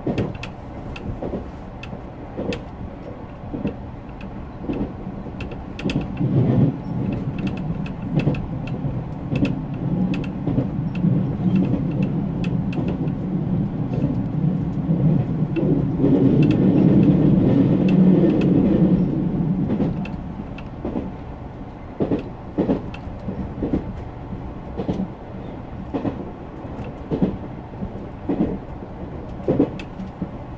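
JR Central Series 383 tilting electric train running at speed, heard from inside the leading car: a steady low rumble with frequent clicks from the wheels on the track. The rumble grows louder about six seconds in, is loudest around two-thirds of the way through, and drops back near the end.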